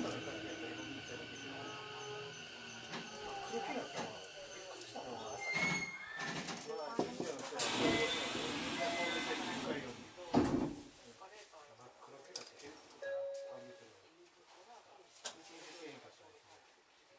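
Indistinct voices inside a stopped electric train, with one sharp knock about ten seconds in; the last few seconds are quieter.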